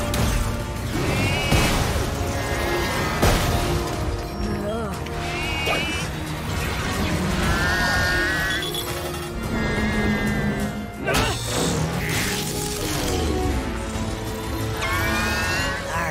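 Cartoon action-scene soundtrack: a music score under crash and explosion effects, with several sharp impacts and a few short, warbling, high-pitched cries.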